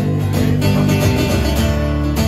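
Two acoustic guitars played live, strummed chords over sustained low notes.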